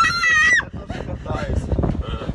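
A woman's high-pitched, wordless whimper of fear. It rises and is held for about half a second, then breaks off into quieter, rumbling noise.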